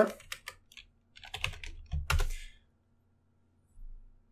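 Computer keyboard being typed on: a few quick separate keystrokes, then a louder cluster of key presses about a second and a half to two and a half seconds in.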